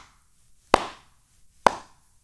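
Two sharp claps about a second apart, sounding the jukbi, the Korean Zen clapper signal that opens a meditation sitting.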